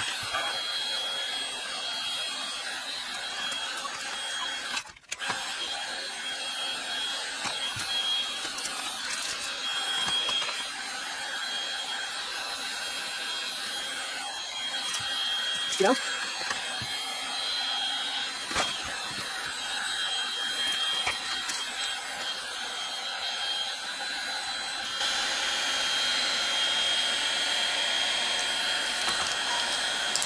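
Milwaukee M18 cordless heat gun running steadily, a fan whir with a thin high whine, heating vinyl stickers on plastic panels to soften the adhesive for peeling. There is a brief break in the sound about five seconds in.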